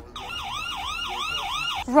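Emergency-vehicle siren in a fast yelp, its pitch sweeping up and down about four times a second.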